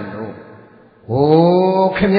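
A Buddhist monk chanting: a phrase trails away, then about a second in his voice holds one long, steady note.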